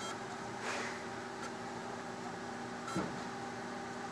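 Thermo Microm HM 355S motorized rotary microtome started from its control panel: a steady electrical hum with a soft swish about a second in and a click near three seconds as the motor drive runs.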